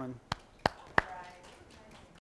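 Hand claps: three sharp claps about a third of a second apart, the second and third much louder than the first.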